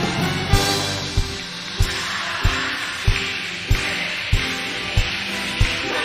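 Live band music in an instrumental passage: held chords over a steady bass drum beat, a little over one and a half beats a second.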